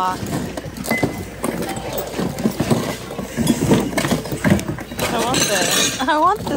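Hard plastic toys and housewares knocking and clattering as a gloved hand rummages through a jumbled bin, with other people's voices in the background.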